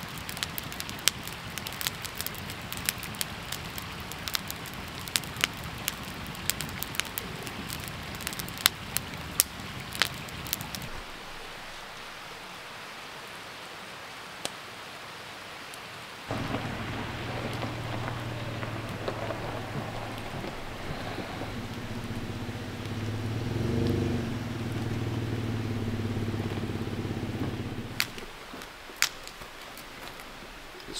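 Wood campfire crackling with frequent sharp pops for roughly the first ten seconds, then falling quieter. Later a steady low hum with held tones comes in and stops a couple of seconds before the end.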